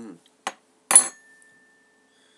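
Tableware clinking as it is set down: a light tap about half a second in, then a louder clink about a second in that leaves a thin ringing tone.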